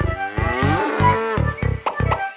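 A cow mooing once, lasting about a second and a half, over a steady musical beat.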